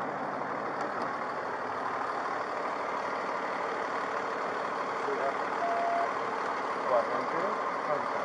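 Fire engine's diesel engine idling with a steady rumble and hiss close by. A short beep sounds a little over halfway through.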